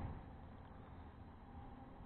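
Near silence: faint steady outdoor background noise between words.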